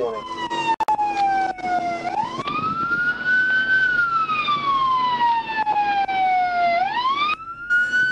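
Police siren in a slow wail, its pitch falling and rising in long sweeps about every five seconds. The sound drops out for a moment near the end.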